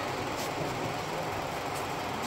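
Steady, even background noise with a few faint clicks, the room's ambient sound.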